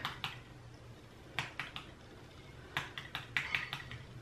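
Light taps on a small upturned plastic bottle of hair volume powder, shaking the powder out onto the hair roots. A pair of clicks at the start, three more about a second and a half in, and a quicker run of about six near the end.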